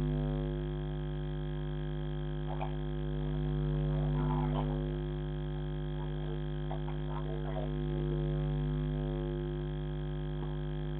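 A steady electrical hum with a deep drone and a stack of overtones, slowly swelling and fading about every four seconds, as picked up by a security camera's built-in microphone. A few short, higher sounds come through it a few times.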